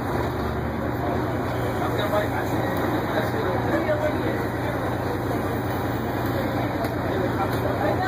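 Crown Supercoach Series 2 school bus idling steadily while stopped, heard from inside the bus, with faint voices over the hum.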